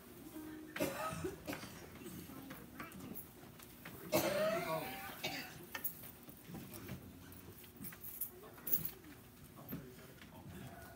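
A church congregation getting up from the pews: shuffling, scattered knocks and low murmuring, with a louder brief sound about four seconds in.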